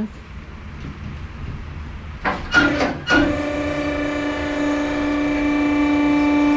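Electric-hydraulic pump of a two-post car lift raising the car's stripped body. A low rumble at first, a short clatter about two seconds in, then a steady whine that holds.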